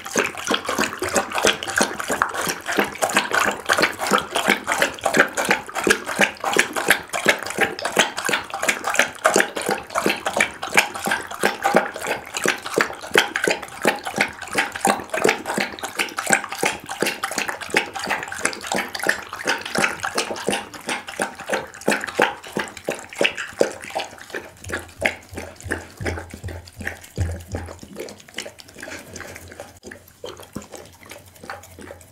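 Pit bull lapping chicken bone broth from a glass bowl close to the microphone: a fast, steady run of wet laps that grows a little softer near the end.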